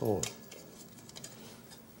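A man's brief "Oh", then quiet with a few faint clicks of a metal colander of chopped eggplant being lifted from a bowl.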